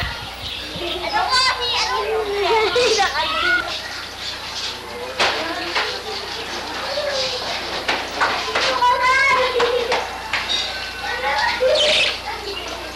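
Children's voices talking and calling out, several overlapping and high-pitched, with no clear words.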